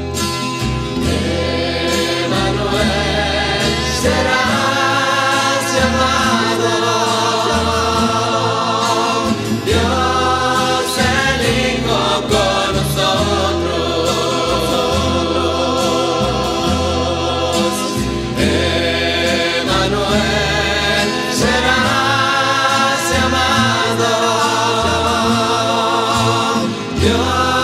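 Christian rondalla music: a choir singing with vibrato over a plucked-string accompaniment and a stepping bass line.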